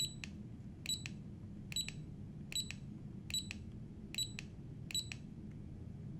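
Control-panel button on a Nitto Kohki brushless electric screwdriver pressed seven times, about once every 0.8 s, each press giving a click and a short high beep as the channel number steps up.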